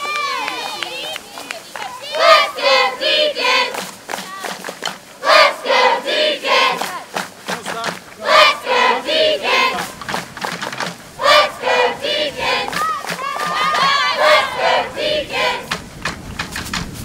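A large group of voices chanting a cheer in unison: five short rhythmic phrases of quick shouted syllables, about one every three seconds.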